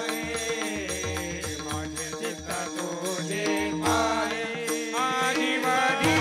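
A man singing a devotional Marathi song with a steady drone and a hand-drum beat behind him. His voice comes in stronger, in long wavering notes, in the second half.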